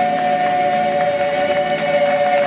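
Gospel choir holding the final chord of a song, two high notes sustained steady over lower voices, with the first scattered claps near the end.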